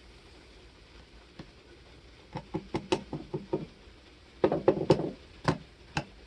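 Light knocks and clatter of pour-over coffee gear being handled: a jar of ground coffee, a plastic dripper and its paper filter. They come in irregular groups, one lone knock early, quick runs about two and a half and four and a half seconds in, and a single louder knock near the end.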